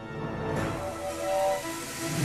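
Cartoon score music over a rushing hiss that swells in about half a second in: a monorail train speeding along its track.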